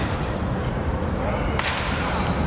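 A baseball bat striking a pitched ball with one sharp crack about one and a half seconds in, over a steady low background rumble.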